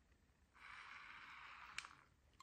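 Battery-powered electric pepper grinder's small motor running faintly and steadily for about a second, then a click as it stops; its batteries are nearly flat, so it turns too slowly to grind.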